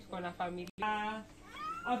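A woman's voice speaking into a microphone, with one drawn-out vowel and a rising inflection, broken by a brief dropout a little under a second in.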